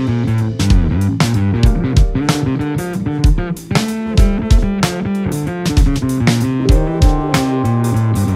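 A band playing an instrumental funk groove live: a busy electric bass line with electric guitar, and a drum kit keeping a steady beat with kick and snare hits. There is no singing, and the band drops away briefly a little past three seconds.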